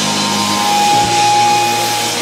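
Live rock band playing loud distorted electric guitars over drums, with no vocals. A long high note is held from about half a second in, and a heavy drum hit lands about a second in.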